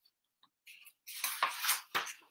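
Rustling and handling noise of a paper picture-book page being turned, with a short sharp click near the end.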